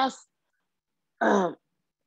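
A man clearing his throat once, a short voiced "ahem" that breaks off his speech mid-word.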